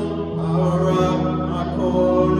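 A man singing a slow song to sustained chords on a Yamaha MX88 electric keyboard.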